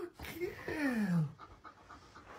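A dog panting quickly, with a drawn-out vocal note that slides down in pitch in the first second and a shorter one just before it.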